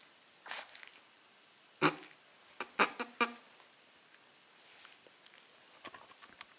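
Chihuahua snuffling with its nose pressed into a pillow: a soft breathy sound about half a second in, then a quick cluster of short, sharp nasal sounds around two to three seconds in.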